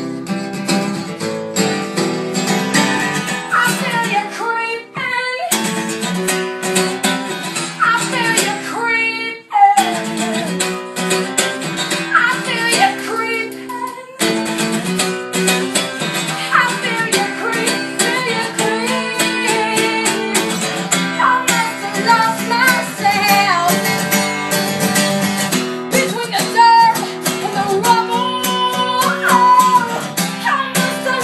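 A steel-string acoustic guitar played live, with a woman singing over it.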